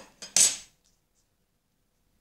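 A brief metallic clink and rattle from a metal drawing compass being handled, about half a second in.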